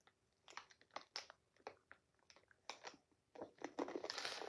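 Faint, irregular crunches of a Takis rolled tortilla chip being bitten and chewed.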